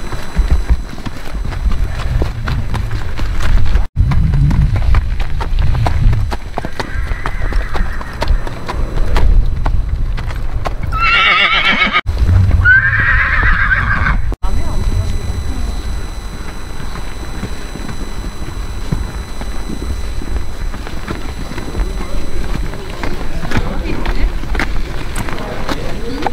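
A horse whinnying twice in quick succession about halfway through, high and wavering, over a steady low rumble and hoofbeats.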